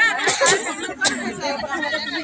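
Several people talking at once, with no single voice clear: background crowd chatter. Two brief clicks sound about half a second and a second in.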